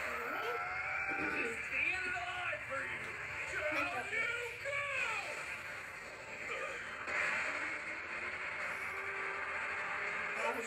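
Soundtrack of a dubbed anime fight scene playing from a screen in a small room: characters' voices shouting and straining over battle effects, then a steady hissing rush in the second half.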